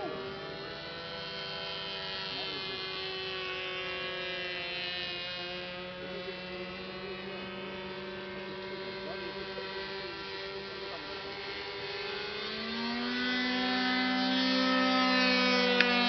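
Motors and propellers of small RC model airplanes in flight, a steady buzzing tone that slowly rises and falls in pitch as the plane manoeuvres. About twelve seconds in a second model's motor joins, louder and higher, and a single sharp click sounds near the end.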